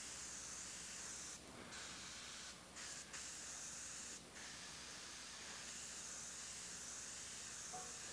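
Iwata HP-BC siphon-feed airbrush spraying gray paint with a faint, steady hiss, broken by a few short gaps in the first half.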